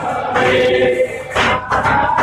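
A group of voices singing the aarti hymn together, with a held note in the first half and brief breaks between phrases near the end.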